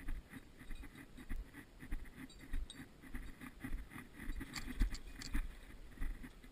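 Footsteps walking on an asphalt road, with clothing and gear rustling close to the microphone, and a few light clinks about four and a half to five seconds in.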